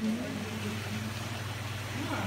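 Steady low mechanical hum of aquarium pumps and filtration equipment.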